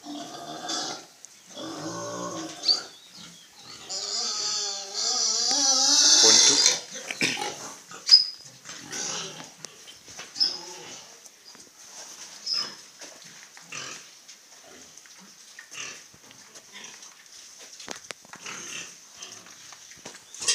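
Farm animals calling. The loudest is a long wavering cry about four to six seconds in, followed by fainter scattered calls and a few short high chirps.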